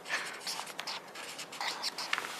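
Several pens scratching on paper notepads as people write, in a run of short, irregular scratchy strokes.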